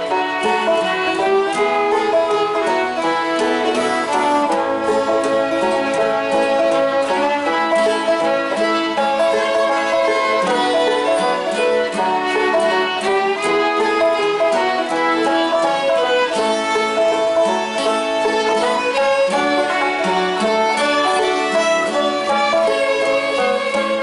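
Two fiddles and a banjo playing a tune together, with a guitar alongside, the music running on without a break.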